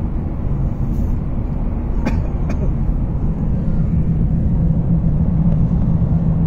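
Car driving through a road tunnel, heard from inside the cabin: a steady rumble of engine and tyres, with the engine hum growing a little stronger in the second half. Two faint clicks come about two seconds in.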